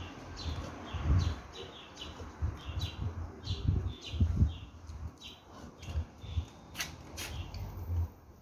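Small birds chirping over and over in short, high calls, with irregular low thuds underneath and two sharp clicks near the end.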